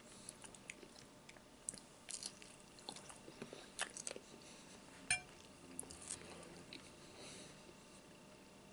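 Bacon being bitten and chewed close to the microphone: irregular wet crackles and mouth clicks, bunched from about two to six seconds in, with one sharp click about five seconds in.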